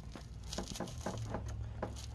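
Faint clicks and brief scrapes of a plastic bumper end being pulled by hand away from a truck's front fender.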